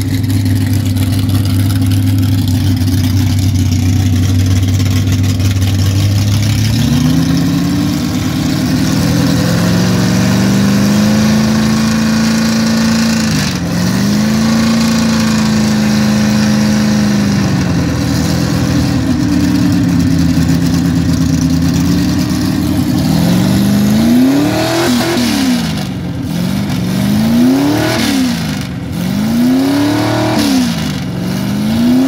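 A muscle car's V8 engine running at a steady speed, then held at higher revs with a couple of brief dips. Near the end it is blipped repeatedly, rising and falling about once every two seconds.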